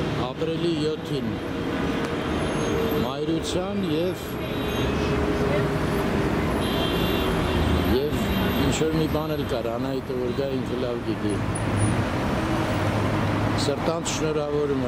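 City street ambience: steady road traffic noise, with passers-by talking in snatches over it.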